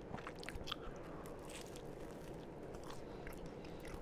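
A person chewing a mouthful of sandwich right at the microphones: soft, fairly quiet chewing with scattered small wet clicks.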